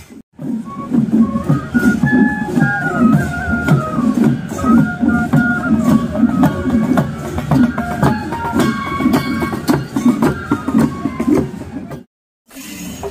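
Marching band of transverse flutes playing a stepping traditional melody in unison over a steady drum beat. It starts after a brief dropout and cuts off suddenly at the end.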